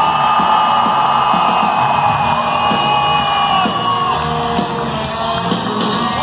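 Live rock band playing loudly, heard from the audience in a hall, with long sustained electric guitar notes that bend in pitch over the rest of the band.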